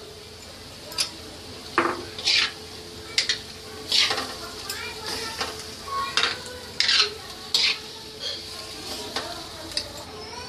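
Metal ladle stirring chickpeas in a metal kadai, scraping and clinking against the pan about nine times at irregular intervals. Underneath is the steady sizzle of the masala cooking with the chickpeas' boiling water.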